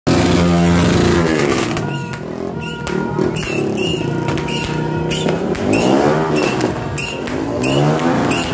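Motorcycle engine revving up and down twice as it rides past, over background music with a steady beat of about two per second.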